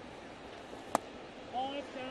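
A pitched baseball popping into the catcher's mitt once, sharply, about a second in, over the steady murmur of a ballpark crowd. A short voice follows near the end.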